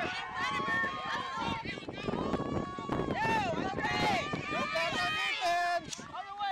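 Many voices calling and shouting over one another on the sidelines of a youth soccer game, with long, high drawn-out calls mixed in and no clear words.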